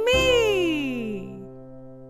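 A drawn-out vocal cry that rises and then falls in pitch over about a second, heard over the song's final held music chord, which fades out.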